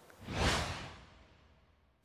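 A single whoosh sound effect, a rush of noise that swells up and fades away within about a second, marking an edit transition between scenes.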